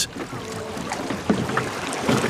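Wooden rowboats being rowed on a lake: oars dipping and splashing in the water over a steady wash of outdoor sound.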